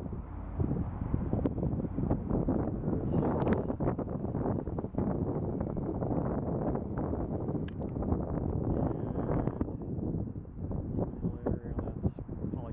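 Wind buffeting the microphone in uneven gusts, over a rumble of road traffic.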